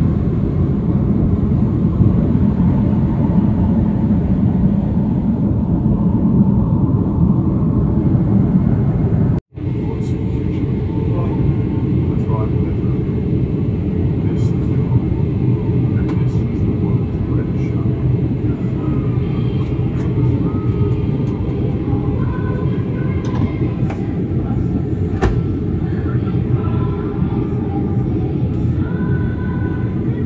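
Airliner cabin noise: the steady, loud low drone of jet engines and airflow heard inside the passenger cabin. It cuts out for an instant about nine seconds in. Faint voices are heard under it in the later part.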